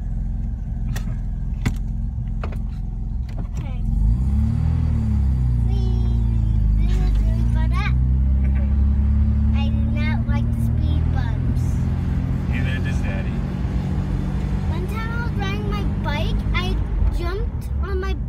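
Carbureted rotary engine of a first-generation Mazda RX-7, heard from inside the cabin: it idles, then about four seconds in it revs up as the car pulls away in first, running louder under load with some rises and dips in pitch. The owner reports a slight hesitation when starting off in first, which he blames on a carburetor that needs rebuilding.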